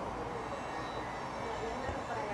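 Indistinct, muffled voices of the neighbors over a steady low background rumble.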